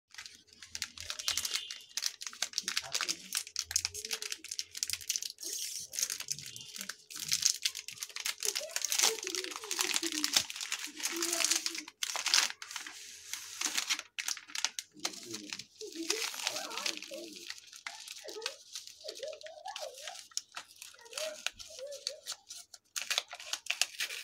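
Plastic wrappers of Cadbury Dairy Milk Silk Bubbly chocolate bars crinkling and tearing as they are handled and opened, a dense run of rapid crackles. Near the end the bar's inner foil-edged paper wrapper rustles as it is unfolded.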